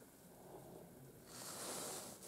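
Quiet room tone with no distinct event; a little past halfway a faint, high hiss comes in and holds.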